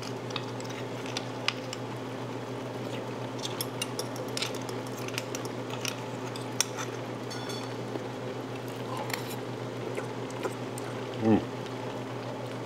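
A fork clicking and scraping against a ceramic bowl of linguine and clams as pasta is twirled: scattered light clinks over a steady low hum. A short "mm" comes near the end.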